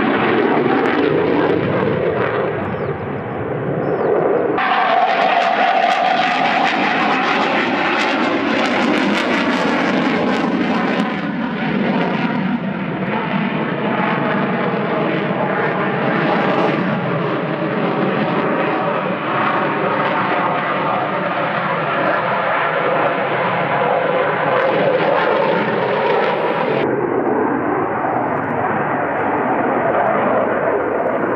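Loud, continuous jet noise from fighters in flight. First a MiG-29 climbs away on both afterburners; after an abrupt change about four seconds in, a Rafale's twin engines are heard, with tones that slide down in pitch as it passes. The sound changes abruptly again and turns duller near the end.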